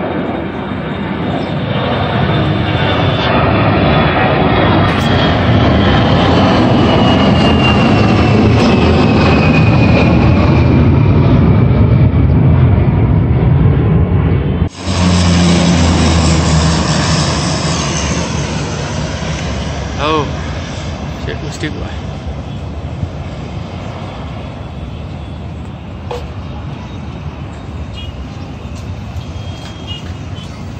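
Twin-engine jet airliner at take-off power climbing away: a loud roar that builds over the first dozen seconds, with a high fan whine gliding down in pitch. After a sudden cut, a high-wing twin turboprop airliner on approach passes low, its propeller and engine drone slowly fading.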